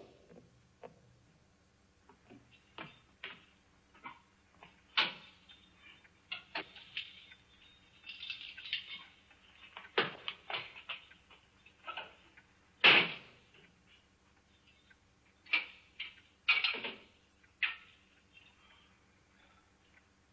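Scattered footsteps, knocks and metal clanks around a barred jail cell as a prisoner is pushed inside. The loudest clank comes about 13 seconds in.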